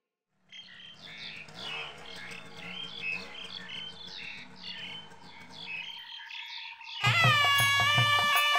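Birds chirping in short, repeated calls over faint outdoor ambience; about seven seconds in, loud music with long held notes starts suddenly.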